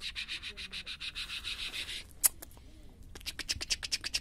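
Fast, even scratching strokes, like fingers scratching through fur. They pause shortly after the halfway mark, where one sharp click is the loudest sound, and resume near the end.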